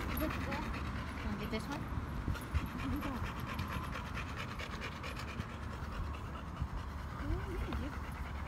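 A dog panting steadily close by, over a low steady rumble.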